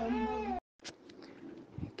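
A person's voice holding a drawn-out vowel that ends abruptly about half a second in. A moment of dead silence follows, then faint low noise with a few small clicks.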